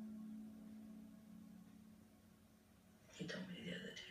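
Faint television programme audio: a low held tone of background score fading away over the first two seconds, then about a second of quiet, whispered speech near the end.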